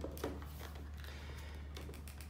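A few light plastic clicks and taps as the hinged screen of a Meike palm bladder scanner is lifted open, the clearest right at the start, over a steady low hum.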